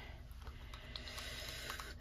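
Acrylic paint being stirred in a small cup with a wooden craft stick: faint scraping with a few light ticks of the stick against the cup.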